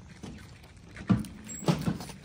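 Two cats eating food from plastic containers close by: irregular wet chewing and lip-smacking, with a louder smack about a second in and a quick cluster near the end.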